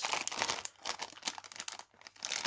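A shiny plastic blind-bag packet crinkling as hands turn and squeeze it: irregular crackles, busiest in the first half second.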